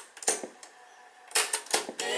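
Piano-key transport buttons of a 1987 Hitachi TRK-W350E twin cassette deck being pressed with mechanical clunks. The music cuts off, there is one clunk, a quiet stretch, then a few quick clunks about a second and a half in, and the music comes back at the end.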